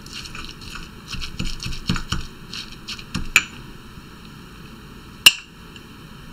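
Marble pestle pounding and grinding herbs and garlic in a marble mortar: a run of soft, irregular knocks over the first three seconds or so, then two sharp stone clicks, the louder one about five seconds in.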